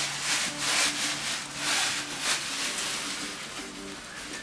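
Fingers and a metal spoon working rice on a plate: a run of soft scraping, rubbing strokes as the rice is pressed and scooped up by hand.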